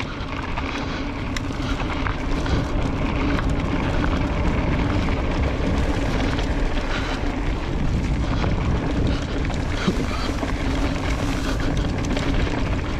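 Riding a Specialized Levo electric mountain bike down dirt singletrack: wind rumbles on the camera's microphone over the steady rolling of the tyres, with frequent small clicks and rattles from the bike over the rough trail.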